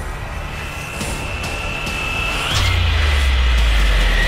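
Promo-style sound design: a steady high electric whine, then a sudden deep bass boom about two and a half seconds in that carries on as a low rumble.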